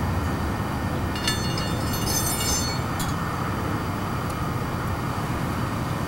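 Steady low rumbling outdoor background noise, with a brief light metallic jingle of the cup cutter's stainless steel parts being handled about a second in.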